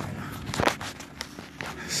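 Footsteps and knocks on a hard floor, a few uneven steps, the loudest a little over half a second in.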